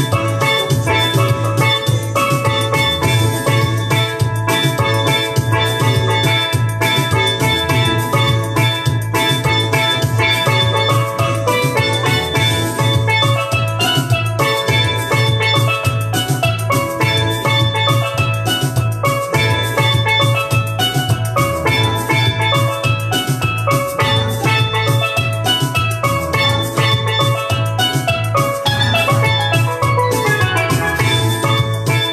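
Steel pan played with sticks, a steady stream of ringing melodic notes, over a backing track with a steady beat and a bass line underneath.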